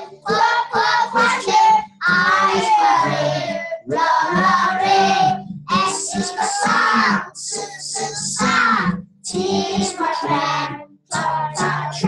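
A group of young children singing a song together in unison, in phrases separated by short breaths.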